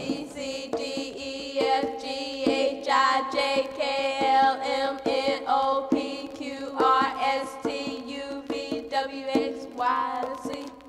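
Music playing from a vinyl LP of children's songs: pitched notes over a regular beat of about two strikes a second.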